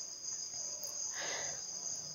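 A faint, steady high-pitched whine running under the pause, with a soft breath a little over a second in.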